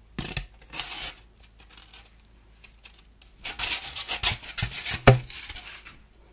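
Hot-wire-cut white foam wing cores rubbing and scraping against each other and against the hands as they are handled. There are a couple of short scrapes at first, then a denser run of scraping in the second half that ends with a thump.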